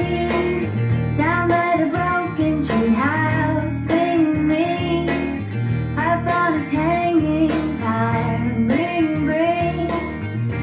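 Instrumental break of a pop song: an electric guitar plays the melody, with slides between notes, over a backing track with a steady bass line.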